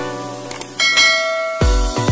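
Outro music with subscribe-animation sound effects: two quick mouse clicks about half a second in, then a bright bell chime that rings on. A heavy bass beat starts near the end.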